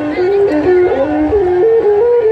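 Traditional Khmer lakhon basak music: one ornamented melody line stepping up and down between a few notes, with small slides between them.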